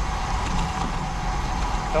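Steady rushing wind noise over the microphone with tyre and road noise from a road bike rolling along pavement.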